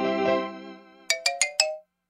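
Cartoon background music fading out, followed by a short closing sting of four quick, bright, chime-like notes that stop abruptly.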